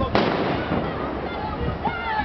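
A single loud explosive bang just after the start, with an echoing tail that dies away over about half a second, over a background of voices.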